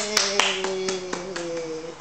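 A long, drawn-out "yay" cheer held on one slowly falling note, with hand clapping at about four claps a second. The cheer fades out just before the end.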